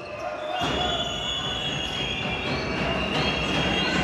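Basketball being dribbled on a hardwood court over the steady noise of an arena crowd, with long high-pitched steady tones above the crowd from about half a second in.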